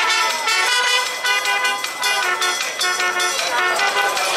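Brass fanfarra playing, with trumpets, trombones, mellophones and sousaphones sounding a run of short, detached chords that change pitch every fraction of a second.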